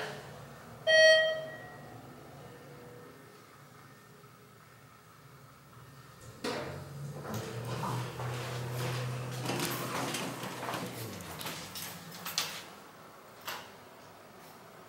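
Hydraulic elevator in operation: a single ringing chime about a second in, then, after a knock, a steady low hum of the car running for about four seconds, followed by clicks and knocks from the car door.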